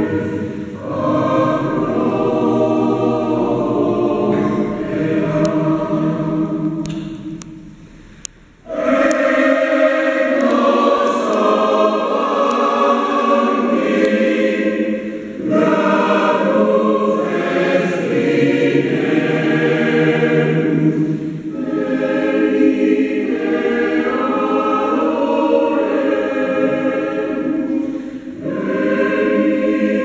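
Mixed choir of women's and men's voices singing a Christmas carol (villancico) in phrases. The singing fades almost away about a quarter of the way through, then comes back in strongly all at once.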